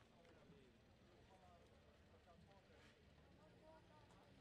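Near silence: faint outdoor background with distant, indistinct voices.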